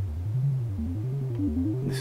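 DIY modular synth's 4046 VCO playing a repeating sequence of low notes through an MS-20 style low-pass filter with its cutoff turned down, so the higher frequencies are knocked out and the notes sound dull. Near the end the cutoff starts to open and brighter overtones come back in.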